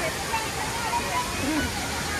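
Steady rush of an artificial waterfall cascading down rockwork, with the chatter of a passing crowd in the background.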